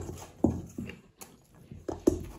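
Noisy eating as chicken biryani is wolfed down by hand against the clock: chewing and wet mouth sounds in short bursts, about three in two seconds.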